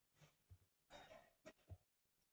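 Near silence, with a few faint, short breath-like sounds from the narrator.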